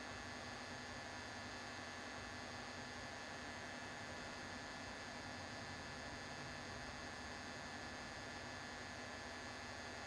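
Faint, steady electrical hum and hiss, unchanging, with no other sounds.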